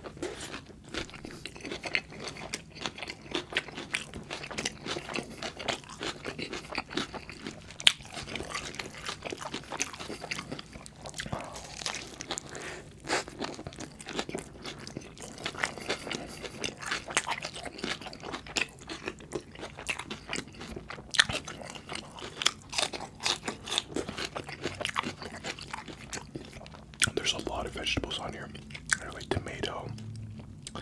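Close-miked chewing of a double-patty bacon cheeseburger: irregular crunching bites and wet mouth sounds.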